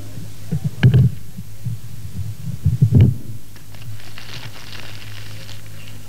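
A few dull thumps and knocks, the loudest about one and three seconds in, over the steady low hum of an old live recording.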